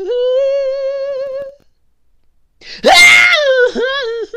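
A lone female voice singing unaccompanied: a long held note with vibrato that stops about a second and a half in, then a second of silence, then a loud, rough, screamed high note about three seconds in before the singing carries on.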